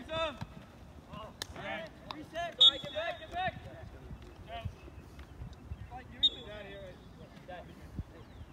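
Shouts and calls from players on an outdoor soccer field, several short cries overlapping, the loudest about two and a half seconds in and again about six seconds in. A single sharp knock, like a ball being kicked, comes about one and a half seconds in.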